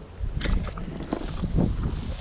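Wind buffeting the microphone of a moving camera, with a sharp burst of rustling about half a second in, followed by irregular low thumps and rustles.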